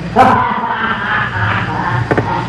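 A dog barking and yelping on an old 1930s film soundtrack, loudest just after the start.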